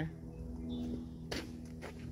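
Two footsteps, about a second and a half in, over a steady low hum.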